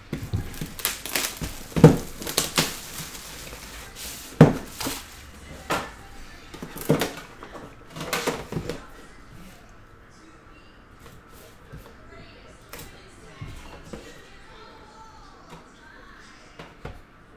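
Plastic shrink wrap on a sealed trading-card box being torn and crinkled: a run of sharp crackles and rips for about the first nine seconds. After that come quieter handling clicks and rustles as the plastic sleeve is slid off the metal tin.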